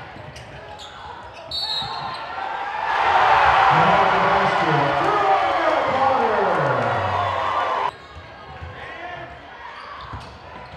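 Live basketball game sound in a gymnasium: a ball bouncing on the hardwood and short high squeaks. From about three seconds in comes a loud swell of crowd noise with a drawn-out tone falling in pitch, cut off suddenly near eight seconds.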